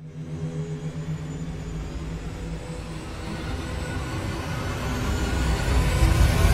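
A low rumbling drone that swells steadily louder, a cartoon sound effect building menace as an angry character's fury seems about to erupt.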